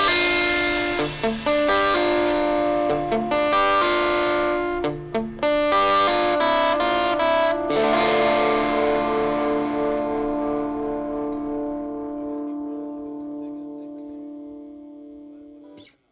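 Distorted electric guitar playing a few chords, then striking a final chord about eight seconds in and letting it ring out, slowly fading to silence at the close of the song.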